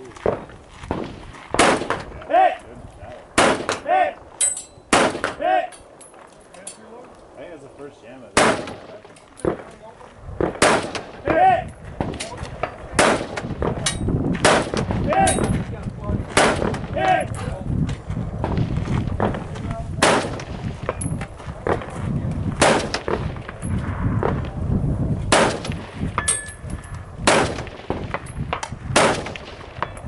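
A rifle fired from the prone position at a steady, deliberate pace, about twenty shots one to two seconds apart. Many shots are followed a moment later by a short ring from a distant steel target being hit.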